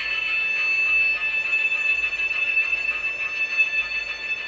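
Steady high-pitched electronic whine with fainter higher tones over a light hiss, as from running DLP video projectors.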